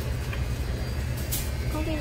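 Steady low hum of grocery-store freezer cases, with a short rustle about one and a half seconds in; a woman starts speaking near the end.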